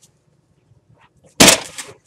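A cardboard box full of clear plastic parts containers set down on a table: one loud clattering thump about a second and a half in, fading quickly, after a few faint clicks.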